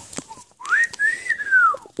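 A person whistling R2-D2's beeping "voice": one whistled note that slides up high and then glides back down, starting about half a second in and lasting over a second. A short click comes just before it.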